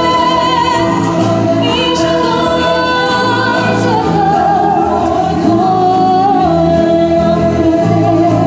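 A woman singing live into a microphone, holding long notes with vibrato, over steady instrumental accompaniment.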